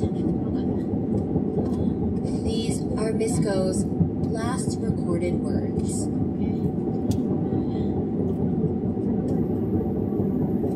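Steady low rumble of a vehicle's engine and tyres heard from inside the cab at motorway speed. Brief wavering, voice-like sounds come in about three seconds in and stop by about four and a half seconds.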